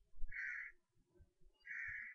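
A bird calling with short, harsh calls, two in quick succession, part of a series repeating about every second and a half.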